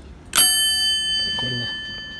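A brass counter service bell struck once by hand, ringing out with a bright, clear tone that slowly fades.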